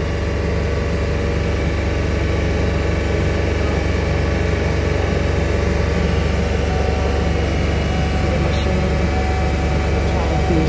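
A van's engine idling steadily: a continuous low hum with several steady tones above it, unchanging throughout.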